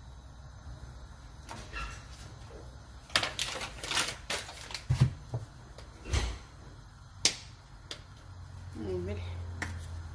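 Kitchen handling noises at the stove: a series of sharp clicks and knocks from utensils and a spoon against a metal pot, with a few short rustles in the middle and two low thuds. A brief bit of voice comes near the end.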